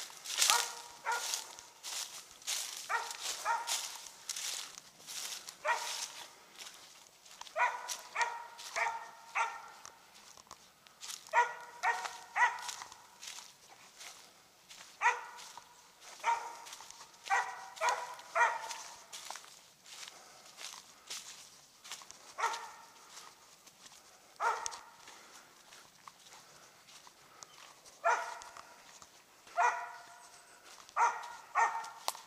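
Treeing Mountain View Cur barking in short runs of two to four barks, spaced a few seconds apart, with footsteps crunching through dry leaves.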